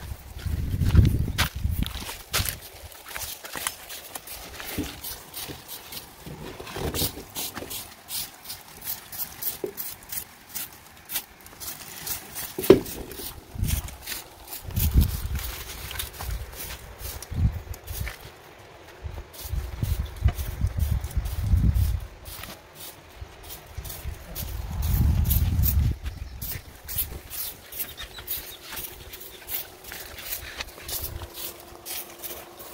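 Footsteps and scattered clicks, knocks and scrapes of manual clearing work on dry ground, with several low rumbles coming and going.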